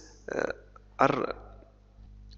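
A man's voice making two short hesitation sounds, 'uh', a pause in his speech.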